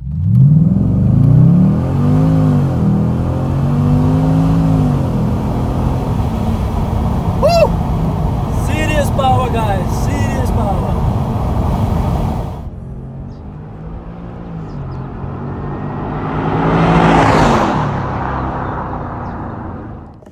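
Jaguar XFR's supercharged V8 accelerating hard, heard from inside the cabin: the engine note climbs from the start and dips and climbs again at each gear change, with voices shouting over it partway through. Later the car passes by outside, its sound swelling to a peak and fading.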